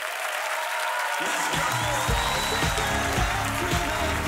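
Studio audience applauding and cheering at the end of a song. About a second in, music with a pulsing bass comes in under the applause.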